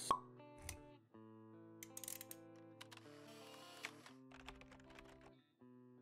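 Quiet intro jingle for a logo animation: held musical notes with scattered short clicks, opening with a sharp pop.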